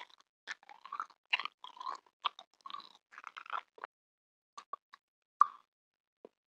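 Close-miked mouth chewing a small red candy: a dense run of crackling mouth clicks for about three seconds, then a few scattered clicks and one sharp click near the end.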